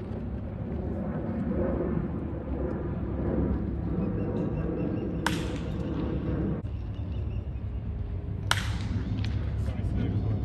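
Murmur of spectators' voices with two sharp cracks about three seconds apart. The second crack, near the end, is a wooden bat hitting a pitched baseball.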